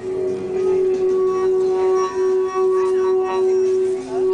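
Metal singing bowl being rimmed with a wooden mallet, giving one strong sustained tone with fainter overtones that swells and dips a few times.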